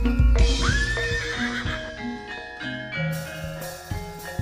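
Jaranan music over a sound system: struck gamelan-style metal notes and drum strokes, with a horse whinny sound effect about half a second in that rises and then holds for about a second and a half.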